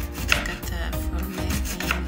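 Knife slicing a red onion on a plastic cutting board, with a few crisp strikes of the blade against the board as each slice is cut through.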